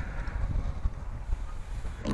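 Wind buffeting the microphone: a gusty, uneven low rumble.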